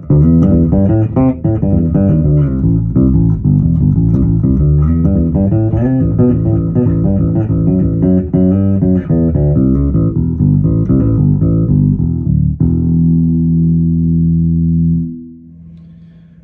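MG Bass JB1 neck-through five-string electric bass with Bartolini pickups, played fingerstyle through a Demeter bass head and Ampeg cabinets, its blend turned toward the bridge pickup. A busy line of notes runs for about twelve seconds and ends on a held note that rings for a couple of seconds before it is cut off.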